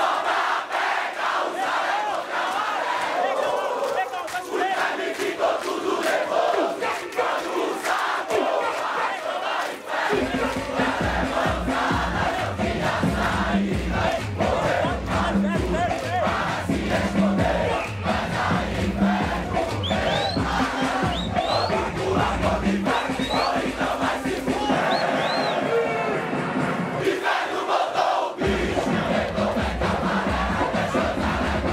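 A large crowd singing and chanting in unison, unaccompanied at first. About ten seconds in, a heavy bass beat of funk music comes in under the voices. The beat drops out for a couple of seconds near the end and then returns.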